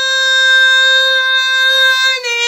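A woman's voice holding one long sung note at a steady pitch.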